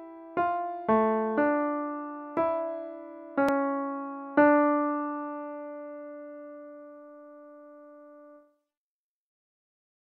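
Two-voice counterpoint exercise played back in a piano sound: a handful of notes in the lower line against the upper voice, slowing into a final chord that rings and fades, then cuts off suddenly about eight and a half seconds in.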